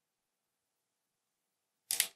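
Near silence, then a short, sharp whoosh near the end, lasting about a fifth of a second.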